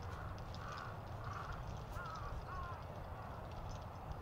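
A bird calling about five times in the first three seconds, the last two calls short rising-and-falling notes about half a second apart, over a steady low background rumble.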